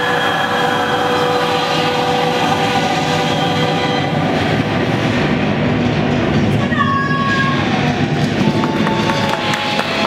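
Dark-ride show soundtrack in a temple scene: sustained ominous chords over a steady low rumble, with a brief pair of sliding tones about seven seconds in.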